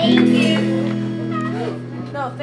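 The amplified band's last chord ringing out and slowly fading, with a few short, high voice calls over it.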